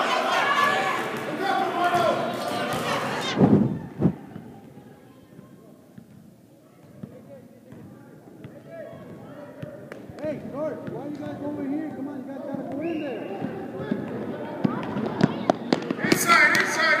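Indoor gym sounds of a youth basketball game: voices of spectators and players, loud for the first few seconds, then a quieter stretch with a basketball bouncing on the hardwood and scattered thuds that pick up near the end.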